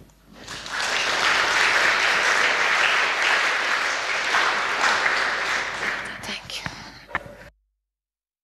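Audience applauding. It swells within the first second and holds, then thins after about five seconds into a few last claps before cutting off suddenly.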